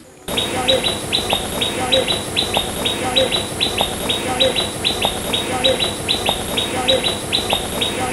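Birds chirping: rapid, evenly repeated short high chirps, several a second, with a soft lower note recurring about every two-thirds of a second over a steady high hiss. The sound starts suddenly a moment in and holds at the same level.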